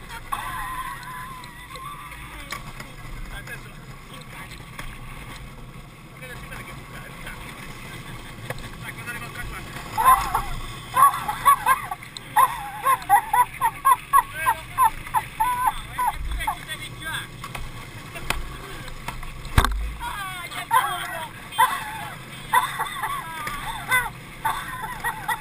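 Wheels of a barrel-bodied gravity kart rolling down an asphalt road, a steady rushing noise with wind on the microphone. About ten seconds in, voices break into quick repeated cries, about two a second, and one sharp knock comes a few seconds before the end.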